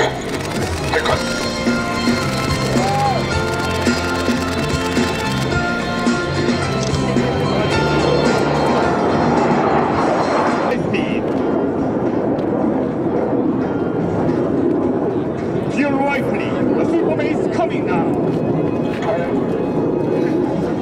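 Music from the loudspeakers plays over a building rush of jet-engine noise. About eleven seconds in the music stops, leaving the steady noise of the display jets passing overhead.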